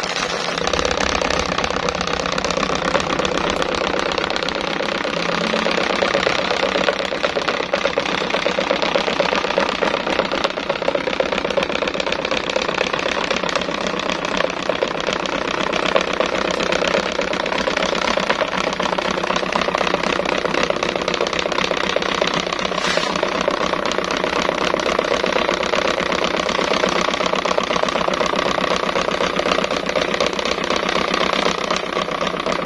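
Pedestal fan with an oversized modified blade running at high speed, giving a loud, steady whir of motor and rushing air with a fast, even rattling texture.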